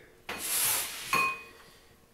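A wooden cutting board being slid across and set down on a kitchen counter, giving a short scraping rush. About a second in there is a light clink that rings briefly.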